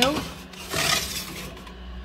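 Metal baking tray scraping along the grill's shelf runners as it is slid in under the grill, one short rasping scrape about a second in.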